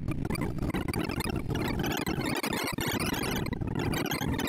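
ArrayVisualizer's sorting sonification as Circle Sort works through 1,024 numbers: a dense, rapid stream of very short synthesized beeps at scattered pitches, each one following the value of an element being compared or swapped.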